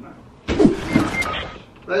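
A short, breathy vocal sound from a person, starting about half a second in and lasting about a second.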